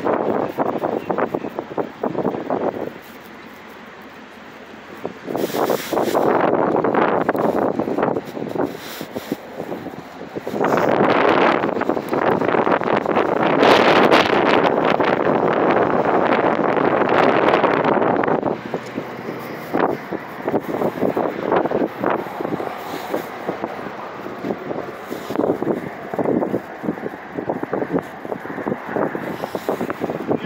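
Wind buffeting a phone's microphone outdoors, rising and falling in gusts. There is a quieter lull a few seconds in, and the loudest, longest gust comes in the middle.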